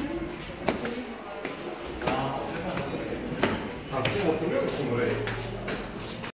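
Footsteps on stairs going down, a few separate steps, with faint voices in the background.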